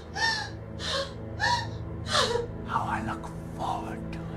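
A person gasping and sobbing in distress: about six sharp, ragged breaths in quick succession, some breaking into short high cries, over a low steady drone.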